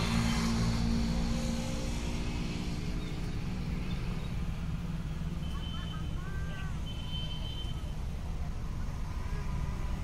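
Outdoor street ambience: a steady low rumble of road traffic, with a vehicle engine humming in the first few seconds and fading away. A few short high chirps come near the middle.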